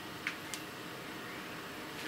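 Steady background hiss of a small room, with two faint short clicks in the first half second.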